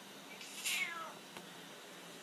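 Calico cat meowing once, a short call that falls in pitch.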